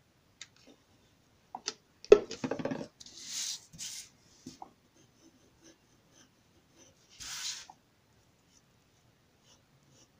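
Handling noise on a desk as a cup used as a circle template is lifted away and the sheet of drawing paper is moved: a few light clicks, a loud clatter lasting under a second about two seconds in, then short hissing swishes.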